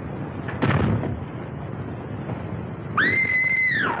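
A sharp bang about half a second in, then a high, held tone about a second long that rises quickly, holds level and falls away near the end, over the steady hiss of an old film soundtrack.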